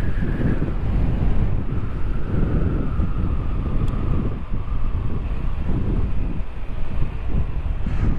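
Wind rushing over the microphone of a moving motorcycle, with the bike's engine and tyre noise underneath; a faint whine sinks slightly in pitch over the first few seconds.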